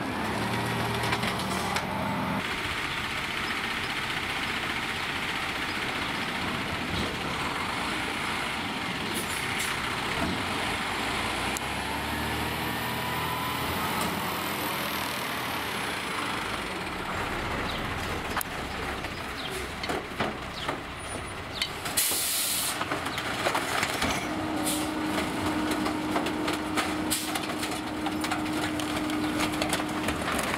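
Peterbilt 520 McNeilus rear-loader garbage truck running, its engine and packer hydraulics working steadily. A short air-brake hiss comes about two thirds of the way in, followed by a steady whine for the last few seconds.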